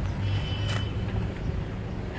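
Parking-lot traffic noise: a steady low rumble of vehicles, with a short high beep of under a second near the start.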